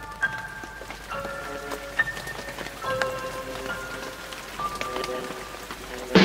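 Steady rain falling, with soft ringing notes at different pitches sounding one after another every second or so.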